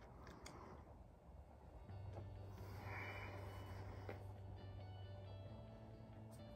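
Quiet puffing on a tobacco pipe: a few faint clicks, then a soft breathy exhale of smoke about three seconds in. Faint background music with steady held tones comes in about two seconds in.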